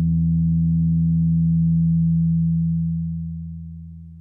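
Electric bass guitar note left ringing, held steady for nearly three seconds and then fading away smoothly.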